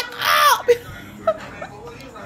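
A man's brief, loud vocal outburst: a yell of about half a second that falls in pitch at the end. It is followed by a stretch of quiet with only a few faint short sounds.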